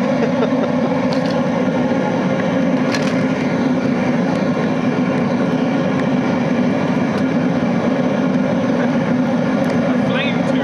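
Oil burner running steadily, its flame blasting out of a pipe into a burning VCR, with a few sharp cracks from the burning VCR, the clearest about three seconds in.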